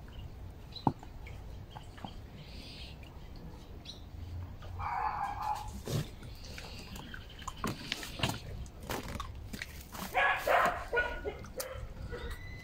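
Animal calls over a steady low background: one call around the middle and a louder cluster of short calls near the end.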